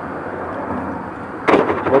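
Steady rumble of a Mercedes-Benz truck's diesel engine idling, heard from inside the cab. A short sharp knock comes about one and a half seconds in.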